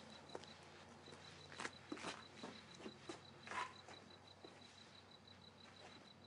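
Very quiet night air with a cricket chirping steadily, about five pulses a second, and a few faint crackles or pops, the loudest about one and a half, two and three and a half seconds in.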